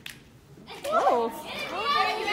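A woman's high call that swoops up and down about a second in, then several women's voices starting a unison chant near the end.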